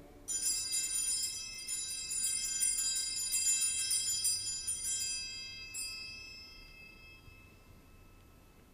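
Altar bells rung three times at the elevation of the chalice, a high metallic ringing that dies away over the last couple of seconds.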